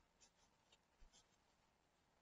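Near silence: room tone, with a few very faint short ticks.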